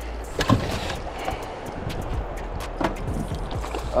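A hooked fish splashing and thrashing at the water's surface beside a boat, in scattered sharp splashes over a steady low rumble.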